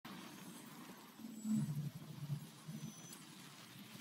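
A low rumbling intro sound effect that swells about one and a half seconds in, over a faint hiss.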